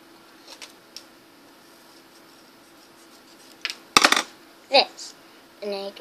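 Handling of cardboard craft pieces: a few light clicks, then a loud cluster of sharp knocks and clatter about four seconds in and another knock just before a girl starts speaking near the end.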